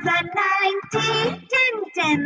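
Children's voices singing the ten times table in a sing-song chant over a light children's music backing.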